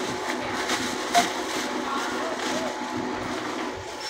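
Busy store ambience at a self-checkout: a steady background hum with faint distant voices and some music, and a brief beep with a click about a second in.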